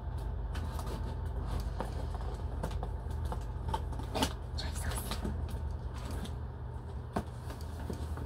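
Scattered scrapes, crackles and clicks of a heavily taped package being cut and pulled open. A steady low hum runs underneath.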